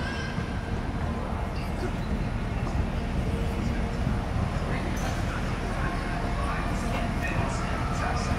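Outdoor ambience: a steady low rumble with faint voices of people talking.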